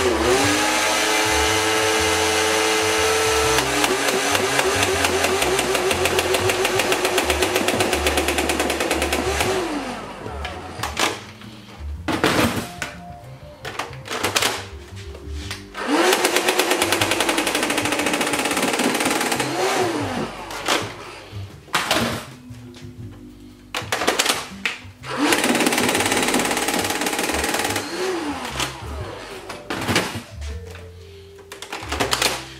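Modded Nerf Rival Khaos blaster firing full-auto. Its flywheel motors whine while the Rhino pusher motor drives the ball-feed conveyor, giving a rapid, even ticking of shots. It fires in several long bursts with short pauses between them, the rate of fire set by a PWM speed-control knob on the conveyor motor.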